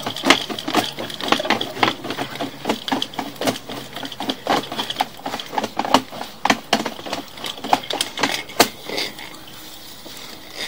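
Sewer inspection camera push cable being pulled quickly back out of the line, a dense, irregular clatter and rattle over a faint steady hum. The clatter stops about nine seconds in, as the camera head comes out of the pipe.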